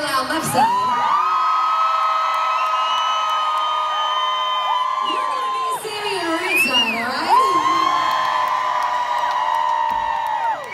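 Live concert vocals: long held sung notes in two phrases, each gliding up and then holding steady, with a crowd whooping and cheering underneath.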